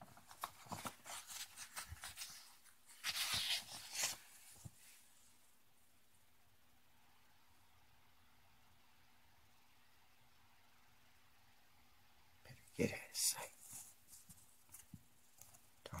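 Paper pages of a comic book being handled and turned: a run of rustles and crinkles in the first few seconds, loudest about three seconds in, then a pause, then more rustling near the end.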